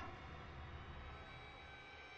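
Faint horror film score: a low rumbling drone with held tones layered over it, which comes in suddenly at the start and holds steady.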